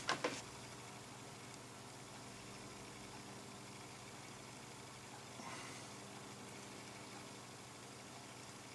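Quiet room tone: a steady low electrical hum under faint hiss.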